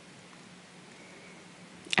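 Quiet, steady background hiss with a faint low hum: the room tone of a voice-over recording. A man's voice starts right at the end.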